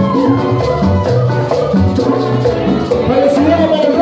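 Live Cuban salsa band playing dance music with a steady rhythm.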